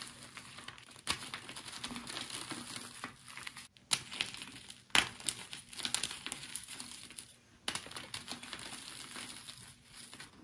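Crinkling and crackling of something being handled and crumpled, broken by a few sharper snaps.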